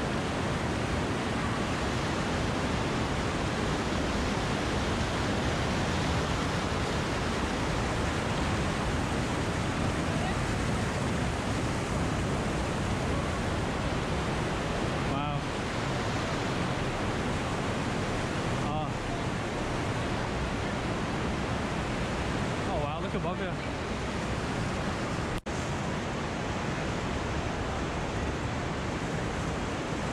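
River water rushing through rapids and over boulders in a narrow canyon: a steady, unbroken rush, with one split-second dropout late on.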